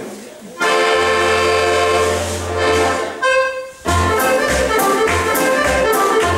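Scottish dance band, accordion-led, playing the introductory chords of a Scottish country dance: a long held chord, a shorter second chord, then the dance tune striking up about four seconds in with a steady bass beat. The opening chords are the dancers' cue to bow and curtsey before the dance starts. Faint hall chatter is heard for the first half-second.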